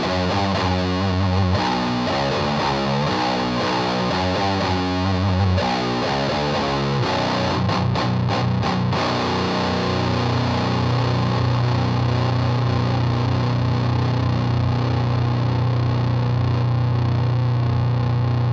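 Electric guitar through a Mad Professor Fire Red Fuzz pedal into an amp's clean channel with the bass turned up, playing a slow, fuzzed doom metal riff of low chords. About seven seconds in it settles on one long low chord left ringing.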